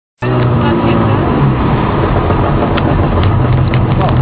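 Motor vehicle on the road: a steady low engine hum and road noise.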